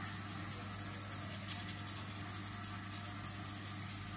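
Felt-tip marker scribbling on paper in quick back-and-forth colouring strokes, faint over a steady low room hum.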